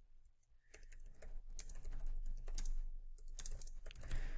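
Computer keyboard typing: a quick, uneven run of keystrokes that starts a little way in.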